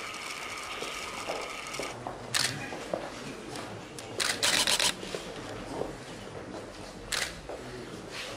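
DSLR camera shutter firing: a single shot about two and a half seconds in, a quick burst of several frames a little after four seconds, and another single shot about seven seconds in.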